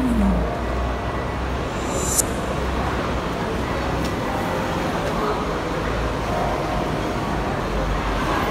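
Busy street ambience by a bus terminus: a steady wash of road traffic noise and background voices of passers-by, with a single sharp click about two seconds in.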